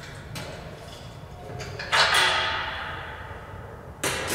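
Steel locking pin being pulled out of the stainless-steel auger feeder's frame. A few light metal clicks, then about halfway through a sudden metallic scrape that rings on and fades away.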